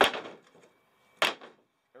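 A wooden stick tossed onto the ribbed floor of a pickup bed lands with a sharp knock that dies away over about half a second, followed just over a second later by a second short knock.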